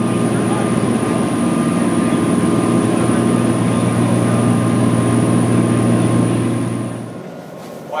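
A 134-foot catamaran running at speed, heard from its open aft deck: a loud steady drone of its engines and rushing wake, with a strong low hum and a thin high whine. It fades out near the end.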